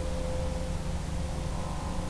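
Steady hiss with a low buzzing hum and a faint constant tone, the audio of an FPV aircraft's video downlink during flight.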